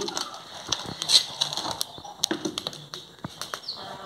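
Wood fire burning between concrete blocks, crackling with irregular sharp pops, while a metal cooking pot is set down over the flames with a few knocks.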